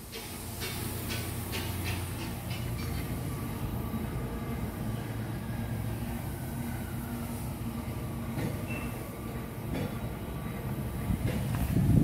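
Steady low rumble of an idling diesel truck engine, with a few crunching steps on gravel in the first few seconds.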